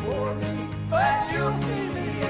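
Live country-gospel band music: a man singing a melody line over strummed acoustic guitar and a steady bass.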